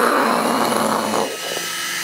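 Small coaxial micro RC helicopter's electric rotors whirring in flight, a steady hum beneath a rush of noise that lasts about the first second and then drops away.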